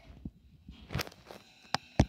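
Handling noise: a few scattered light knocks and clicks, the loudest about a second in.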